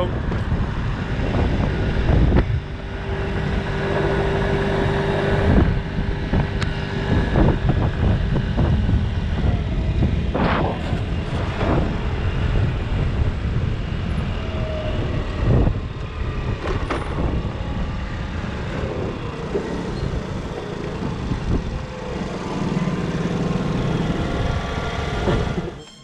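A 50 cc scooter engine running steadily while riding, under a heavy low rush of wind on the microphone, with a few brief sharp knocks around the middle.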